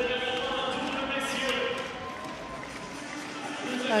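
Arena ambience in a large badminton hall: steady held tones from the hall's sound system over crowd murmur, with a few faint shuttle or shoe sounds from play on other courts. The tones fade about halfway through.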